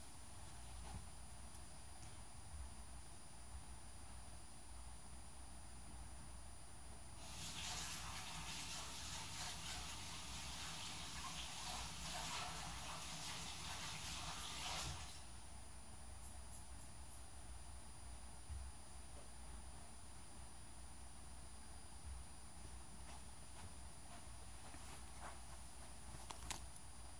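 Faint water running from a tap for about eight seconds, starting about seven seconds in, as hands are washed under it.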